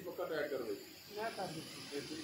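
Steady hiss from a pedestal fan blowing air onto a burning charcoal grill, with faint voices talking in the background.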